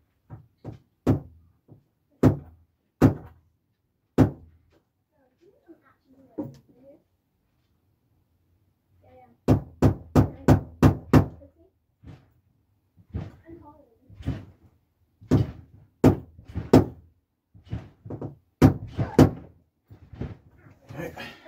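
Sharp knocks and taps on a wooden model railway baseboard as a model signal is being fitted. They come in irregular groups, with a quick, even run of about six taps in the middle.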